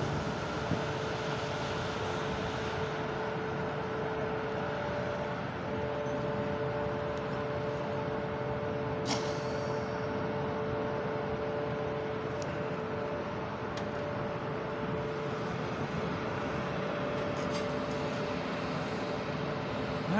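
Steady machinery hum of an industrial site, an even drone with two held mid-pitched tones, with a faint click near the middle.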